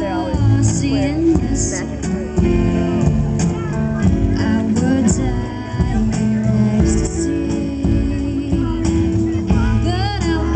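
A live band plays with acoustic guitar, keyboard and drums, cymbals sounding throughout, and a woman sings over it.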